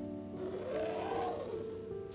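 Soft instrumental background music with steady held notes.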